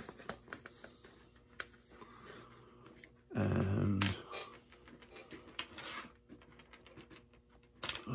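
Scattered small clicks and taps from carving bits and a rotary carving handpiece being handled. A brief wordless vocal sound comes about three and a half seconds in.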